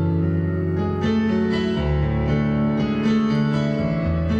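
Electric keyboard playing a piano sound: slow, sustained chords that change about once a second, in an instrumental passage of a soft pop ballad.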